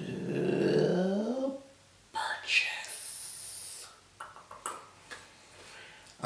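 A man's drawn-out wordless hum that glides in pitch, then a short hiss and a few faint sharp clicks, as of laptop keys being pressed.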